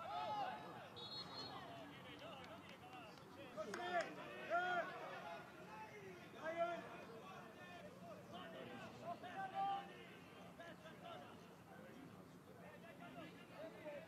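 Men's voices shouting calls across a football pitch in an empty stadium, with no crowd noise behind them. The loudest shouts come about four to five seconds in, and again near seven and ten seconds.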